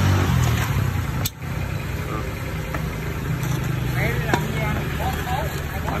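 An engine idling steadily, with a sharp click and a brief dip in level about a second in.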